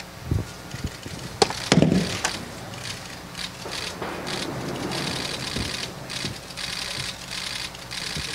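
Cloth rustling as a football jersey is pulled on over the head, with a few sharp knocks and a dull thump in the first two seconds and longer stretches of rustle in the second half.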